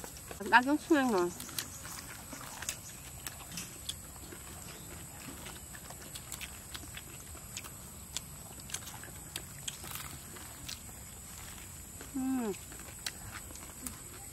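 People eating crusty baguette sandwiches, with many faint scattered crunching and chewing clicks. There is a short pleased "mmm" about a second in and another near the end.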